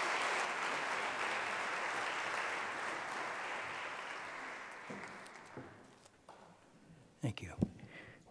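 Audience applauding, dying away over about six seconds, followed by a few faint knocks near the end.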